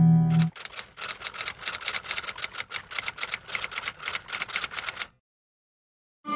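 A held musical chord cuts off, and a rapid run of sharp, irregular clicks follows at about six a second for roughly four and a half seconds, then stops dead.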